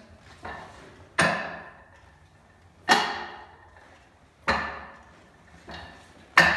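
Hands and forearms striking the wooden arms of a Wing Chun wooden dummy: three sharp wooden knocks about a second and a half apart, each ringing briefly, with fainter taps between them.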